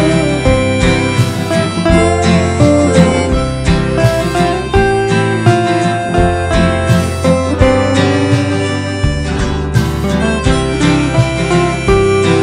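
Harmonica playing a melody over strummed acoustic guitar, an instrumental break with no singing.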